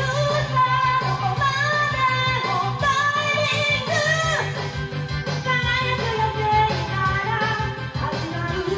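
A woman singing a J-pop song into a karaoke microphone over a backing track with a steady beat.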